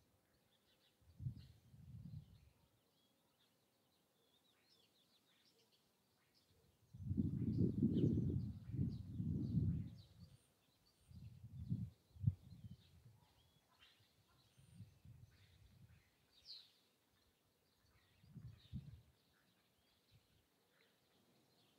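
Small birds chirping faintly throughout, broken by irregular low rumbles of wind on the microphone, the loudest lasting about three seconds from seven seconds in.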